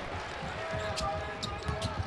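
Arena game sound at a college basketball game: crowd murmur and a basketball bouncing on the hardwood court, with a few sharp hits in the second half.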